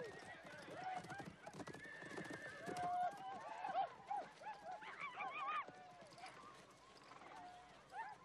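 Horses whinnying and hooves thudding on dry grass, with men's voices calling out; a cluster of quick, warbling calls about five seconds in.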